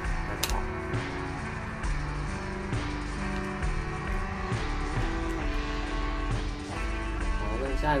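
Background music with guitar, a melody of held notes changing every half second or so. A voice comes in at the very end.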